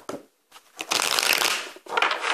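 Tarot cards being shuffled by hand, a crackling burst of riffling about a second long in the middle, with a short softer shuffle near the start.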